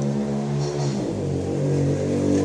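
Engine of a road vehicle in the street, a steady low hum whose pitch shifts about a second in as it changes speed.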